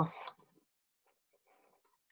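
The last word of a man's speech trails off, then near silence: room tone.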